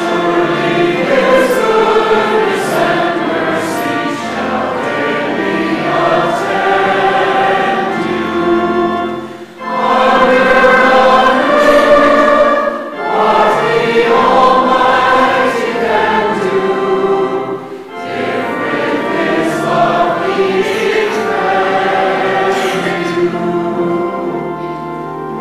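A church congregation singing a hymn together, line after line, with short breaks between phrases about ten and eighteen seconds in.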